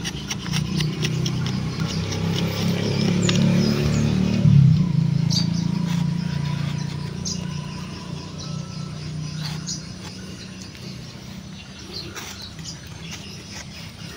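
Birds chirping outdoors, with scattered small clicks and scrapes of bark being peeled by hand and knife from a freshly scored Brazilian grape (jaboticaba) branch. A low drone swells over the first few seconds and fades out by about the middle.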